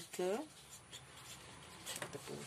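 Marker pen writing on paper: faint, scratchy strokes.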